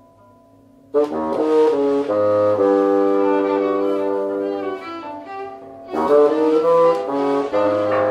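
Bassoon and violin in free improvisation, playing sustained notes that slide and bend in pitch. Low held tones for about the first second, then a loud entry of several overlapping notes, and a second strong entry around six seconds in.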